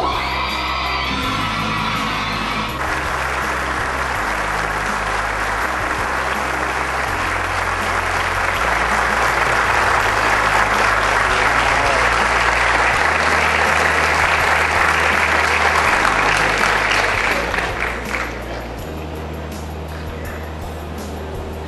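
An audience applauding over background music with a bass line. The applause starts about three seconds in, grows louder in the middle, and dies away a couple of seconds before the end, leaving the music.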